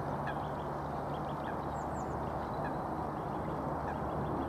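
Steady rushing outdoor background noise with scattered faint, short high chirps of small birds.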